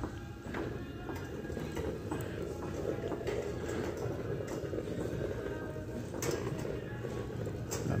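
Wire shopping cart rolling and rattling over a hard tile store floor, with a couple of sharper clatters near the end, over faint in-store background music.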